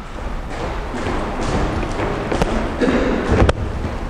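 Boxing footwork on a wooden gym floor: shoes scuffing and shuffling, with two sharp thuds in the second half.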